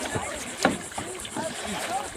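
Kayak paddles dipping and splashing in shallow creek water, with a sharp slap about two-thirds of a second in as the loudest sound. Several children's voices chatter and call at the same time.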